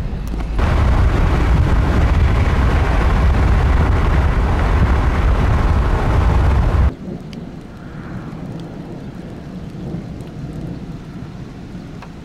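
Loud wind rushing and buffeting on the microphone, with a heavy low rumble, starting about half a second in and cutting off abruptly about seven seconds in; a much quieter steady outdoor hush follows.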